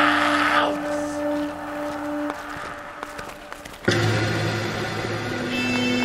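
Instrumental passage of an experimental rock/electronic track with no vocals. Held tones and noisy texture thin out to a quieter stretch, then a loud, low chord comes in suddenly about four seconds in and is held.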